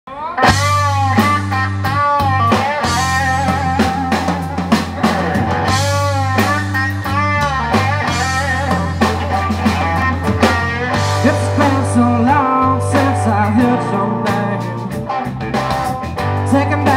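Live blues-rock band playing an instrumental intro: lead electric guitar with bent notes over bass guitar and drum kit.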